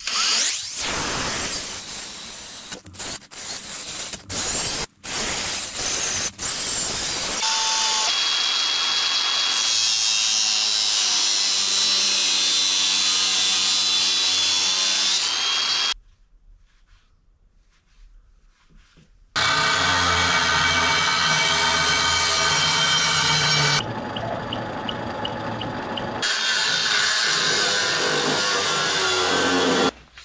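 Cordless drill boring into a small steel part clamped in a vise, starting and stopping in short bursts over the first few seconds, followed by longer steady runs of power-tool work on metal, with a pause of about three seconds of near quiet in the middle.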